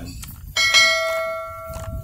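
A bell chime struck once about half a second in, ringing with several clear overtones that slowly fade, then cut off abruptly at the end.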